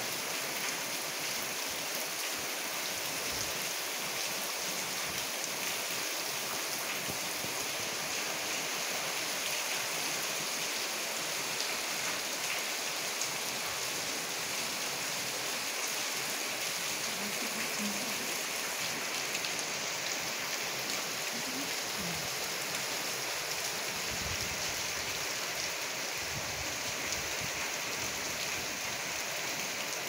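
Steady rain falling on a wet concrete lane and the surrounding buildings, an even, unbroken hiss.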